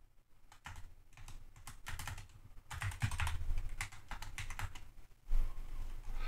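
Typing on a computer keyboard: a quick, uneven run of key clicks with short pauses, starting about half a second in and stopping about five seconds in. A dull low thump follows near the end.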